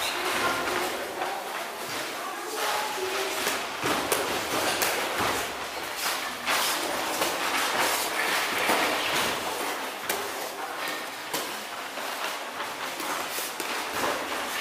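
Punches and kicks landing on training pads and gloves during kickboxing pad drills: irregular sharp slaps and thuds.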